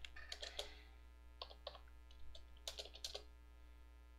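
Computer keyboard typing in three short bursts of keystrokes, faint, over a steady low hum.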